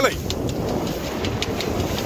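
Steady rush of wind and water aboard a Hawk 20 day boat sailing close-hauled at about five knots in a freshening breeze: a low rumble of wind on the microphone over the hull pushing through choppy water.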